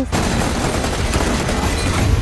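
Automatic rifle fire from a Kalashnikov-type rifle: a rapid, unbroken stream of shots with a heavy low rumble under it.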